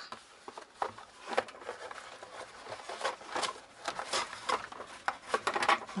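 A chipboard folio album and cardstock being handled on a cutting mat: scattered light taps and soft rustles of paper and plastic sleeves, a little busier near the end.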